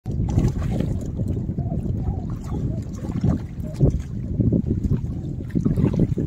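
Wind rumbling on the microphone and water lapping at the shoreline rocks, with a hooked fish splashing at the surface toward the end.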